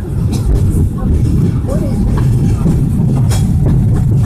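Peak Tram car running down its track, a loud steady rumble heard from inside the car, with an occasional sharp click.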